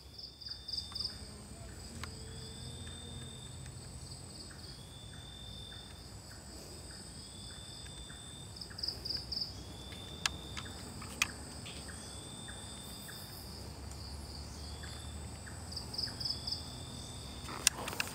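Night insects calling in tropical forest: a high chirp repeating about once a second over a steady thin high drone, with a short pulsing trill now and then. Two sharp clicks come a little past the middle.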